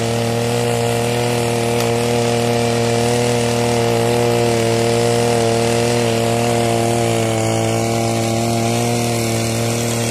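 Kirloskar Kubix petrol brush cutter engine running continuously under load, holding a steady pitch, as its tiller attachment churns through soil.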